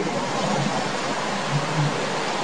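Steady, even hiss of recording background noise, like a microphone's noise floor, with no other distinct sound.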